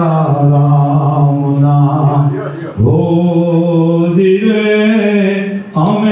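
A man chanting in long held notes into a handheld microphone, with short breaths about three seconds in and near the end.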